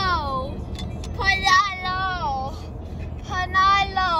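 A child's high voice in long, sliding sing-song calls of about a second each, mostly falling in pitch, with gaps between them, over the steady low rumble of road noise in a car cabin.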